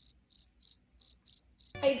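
Cricket-chirping sound effect: six short, high chirps at about three a second, with dead silence between them and the background music cut out. This is the stock comic cue for an awkward silence.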